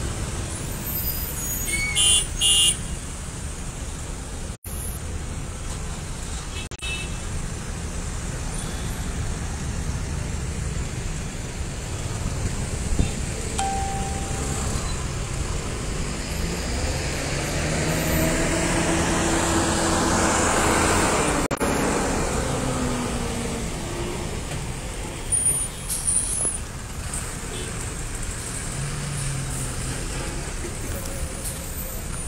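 Congested road traffic: many engines running at crawling speed in a jam, with short horn toots about two seconds in and twice more a few seconds before the end. Around the middle, a heavier vehicle's engine passes close, growing louder and then fading.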